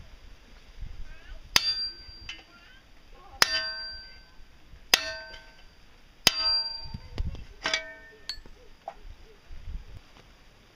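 Hammer blows on a steel punch held against a stainless steel shovel head resting on an anvil, each strike ringing out metallically. There are five hard blows about a second and a half apart, with a couple of lighter taps between them.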